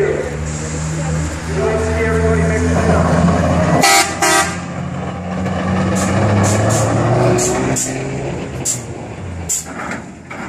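Car engines running as show cars cruise slowly past, with two short horn toots about four seconds in.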